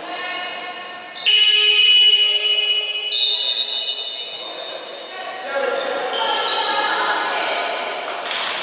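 Basketball game sounds in a sports hall: a loud, steady, high tone begins suddenly about a second in and holds for about two seconds. Further shorter high tones follow over a murmur of voices.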